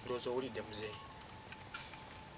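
Crickets chirping in the background, a steady high-pitched trill with no break, under a few faint spoken syllables in the first second.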